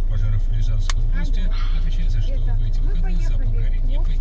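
A car radio tuned to Russkoye Radio plays a spoken broadcast through the dashboard speakers, over the steady low hum of the car's idling engine.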